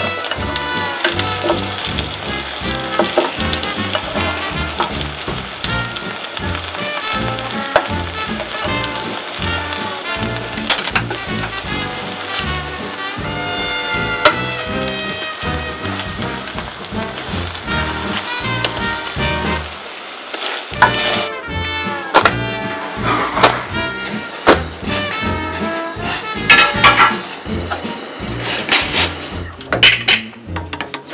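Background music with a bass line throughout, over egg sizzling in a rectangular omelette pan. A few sharp clicks come in the second half.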